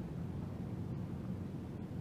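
Room tone: a steady low hum with no other sound.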